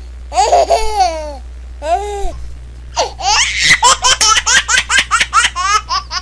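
High-pitched laughter, like a child's: a couple of drawn-out squealing laughs in the first half, then a quick run of short laughing bursts through the second half, over a steady low hum.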